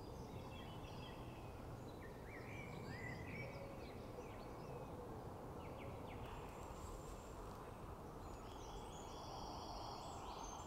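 Faint birdsong, short chirps and whistled glides from small birds, over a quiet steady background hum of open countryside.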